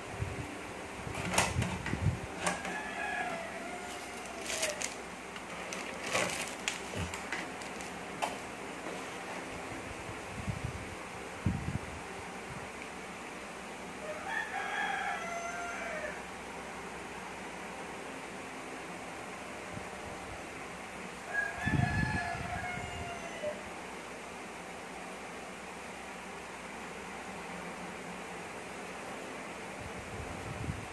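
A rooster crowing three times, each crow about two seconds long, over a steady low hum. A few sharp clicks and knocks come in the first several seconds.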